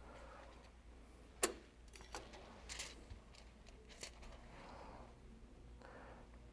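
Scissors cutting hot-stamping foil from its roll: one sharp snip about one and a half seconds in, then a few fainter clicks as the foil is handled.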